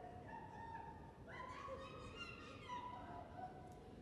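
Faint, wavering animal-like cries and whines from a human voice, thin pitched sounds that slide up and down, over the low hum of a large hall.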